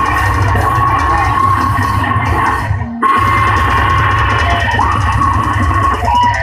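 A heavy metal band playing live and loud, with distorted electric guitar over a drum kit. The sound dips briefly just before halfway and then comes straight back in full.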